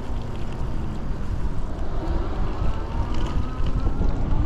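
Wind buffeting the microphone and road noise while riding an e-bike on a wet street, as a dense, steady low rumble. A faint whine rises slowly in pitch from about halfway through.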